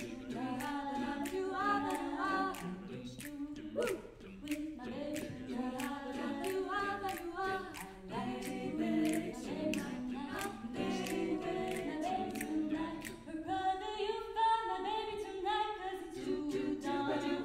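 Mixed-voice a cappella group singing a jazz arrangement: a female lead voice over close-harmony backing vocals, with no instruments. A steady beat of sharp clicks keeps time under the voices.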